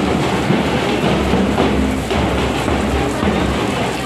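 Music mixed into a dense, steady rumble of noise, with no clear single sound standing out.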